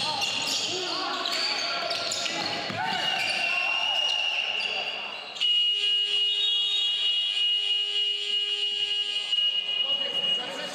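Basketball game-clock buzzer sounding the end of a quarter: a loud, steady electronic tone that starts suddenly about five seconds in and holds for about four seconds. Before it, a basketball bouncing on the hardwood and players calling out.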